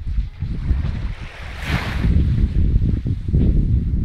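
Wind buffeting the microphone in an uneven low rumble, with the soft hiss of a small wave washing up a sandy shoreline a little before halfway.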